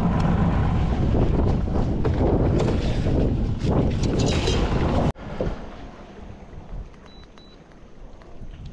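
Wind buffeting the microphone over the running of a small dinghy's outboard motor, a dense rumbling noise that cuts off abruptly about five seconds in. What follows is a much quieter, even background of breeze and water.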